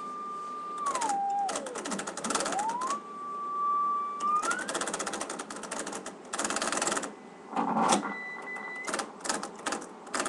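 Audio from an AN/WRR-3A Navy tube receiving set: a steady heterodyne whistle that slides down to a low pitch and back up, as when tuning across a carrier, with bursts of rapid clicking noise and a brief higher steady tone later.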